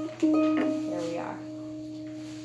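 A harp string plucked about a quarter second in, ringing a steady low note that slowly fades, as the out-of-tune string is being retuned.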